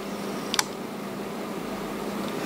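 Steady low hum and hiss of room tone, with one short, sharp click about half a second in.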